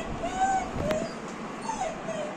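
A puppy whimpering: a few short, thin, high whines that rise and fall, with a brief click about a second in.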